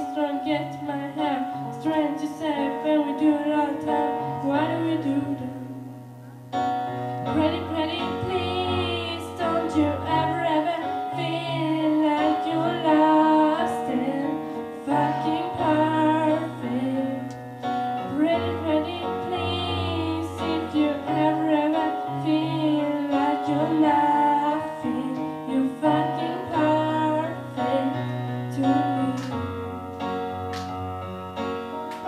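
A girl singing a slow song into a microphone, wavering on her held notes, over sustained keyboard chords. The music drops briefly about six seconds in, then resumes.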